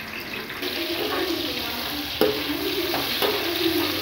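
Onions sizzling in hot oil in a metal pot, a steady crackling hiss. A sharp click comes about halfway through, after which the sizzle is a little louder.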